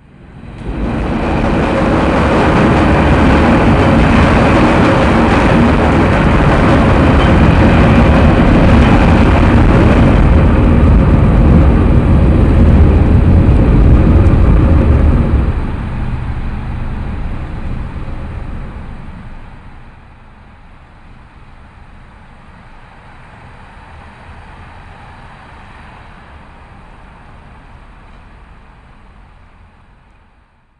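Train crossing an overhead steel railway bridge: a loud, steady rumble that starts abruptly, holds for about fifteen seconds, then dies away to a much quieter steady noise that fades out at the end.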